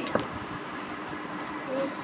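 A plastic stacking ring put onto a children's ring-stacking toy: one light click just after the start, then quiet room tone.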